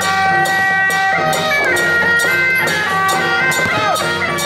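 Taiwanese temple-procession music: a wind-instrument melody of held notes that slide between pitches, over steady hand-cymbal and drum strikes about two and a half a second.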